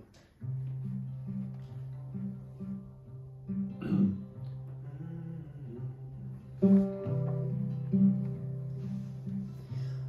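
Solo acoustic guitar playing a song's opening bars: picked notes over a held low bass note, with a louder strum about seven seconds in.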